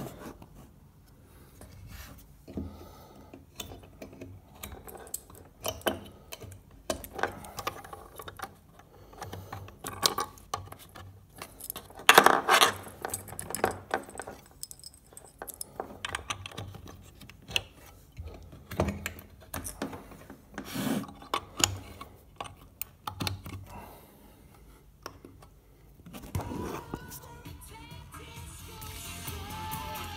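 Scattered clicks, knocks and rattles of plugs, cables and connectors being handled at the back of a hi-fi amplifier while its power supply is changed. About four seconds before the end, music begins playing faintly through the speakers from the replacement amplifier, a sound the owner calls very flat and missing a lot of detail.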